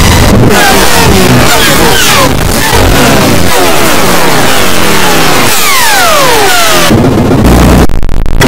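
Heavily distorted, clipped audio of a video-effects edit: a loud, harsh wall of noise with many falling pitch sweeps, strongest a second or so before the end, cutting out briefly at the very end.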